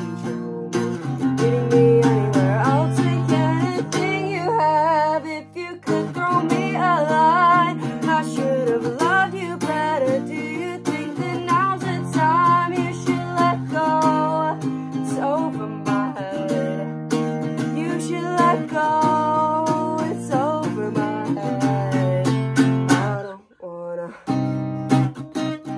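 Acoustic guitar strummed in steady chords, with a voice singing a wavering melody over it. The playing eases briefly about five seconds in and breaks off for a moment just before the end.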